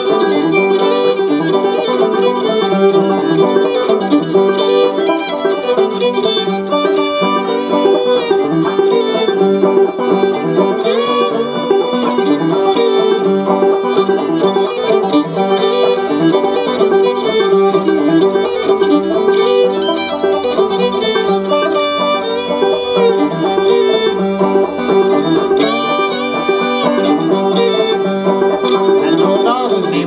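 Fiddle and banjo playing an instrumental break together in a bluegrass-style tune: the fiddle carries the melody over steady banjo picking, with no singing.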